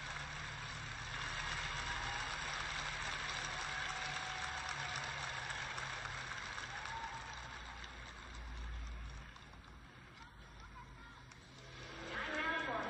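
Arena crowd applauding, steady for about eight seconds and then dying away.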